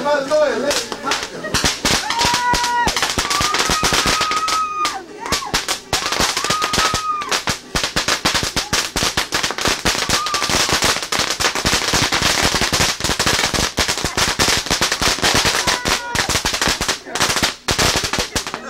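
A long string of firecrackers going off in rapid, continuous crackling pops, with a few brief lulls near the middle and one near the end.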